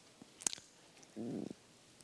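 A mostly quiet pause with one sharp click about half a second in, then a short low rustle lasting about a third of a second just after one second.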